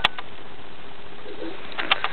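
A baby makes a short, soft coo about one and a half seconds in, over a steady hiss. A click at the start and a quick run of light taps near the end.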